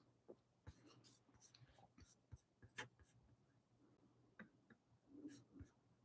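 Near silence: room tone with a faint steady hum and a few scattered faint clicks and taps.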